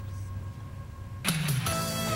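A low steady hum for about a second, then concert music starts suddenly and carries on loud, with several sustained pitched parts.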